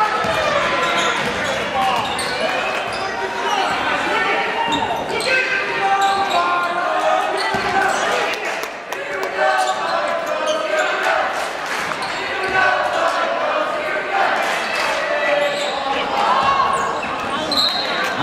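Basketball game in a gym: players and spectators calling out over one another, with a basketball bouncing on the hardwood floor.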